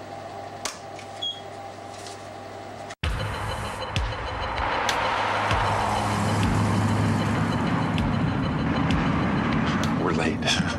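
A low, steady hum with a couple of sharp clicks. About three seconds in it cuts abruptly to the louder, steady road and engine noise of a car moving in traffic, with a few faint clicks.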